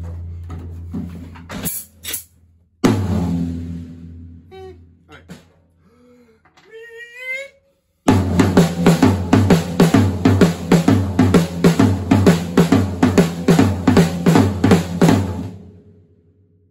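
Two single strikes on a vintage tom, each ringing with a low boom for a second or more as its tuning is checked. Then, from about eight seconds in, a steady drum-kit groove on snare, tom and bass drum at about four strokes a second, which stops just before the end.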